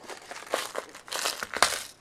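Plastic bag or packaging crinkling as it is handled: a run of rustles and small crackles, loudest in the second half.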